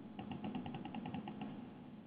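A quick, even run of faint clicks, about nine a second, over a low hiss.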